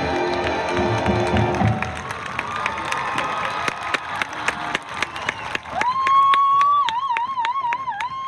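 A pom routine's dance music ends about two seconds in, and the crowd cheers and claps. From about six seconds one shrill voice holds a long high "woo" that wavers in the middle.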